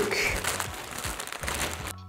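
Plastic mailer bag and the clear plastic bag inside crinkling and rustling as the package is opened by hand and its contents pulled out: a dense crackle, loudest at the start and fading.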